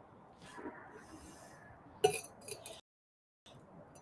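Drink tumbler handled during a sip: one sharp clink about two seconds in, then two lighter clicks.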